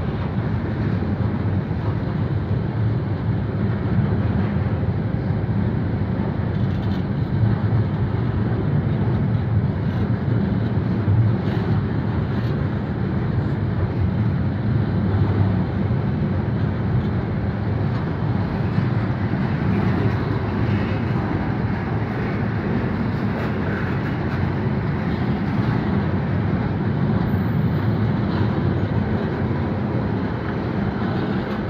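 Loaded container wagons of a freight train rolling past close by: a steady rumble of steel wheels on the rails, with occasional faint clicks.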